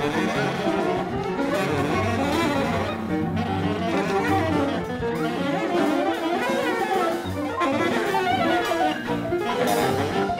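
Live improvised jazz quintet playing: saxophone lines over cello, guitar, piano and drums, with a low sustained cello note underneath.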